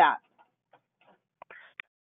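A pause on a phone-quality conference-call line: the end of a spoken word, then near silence with a few faint short clicks near the end.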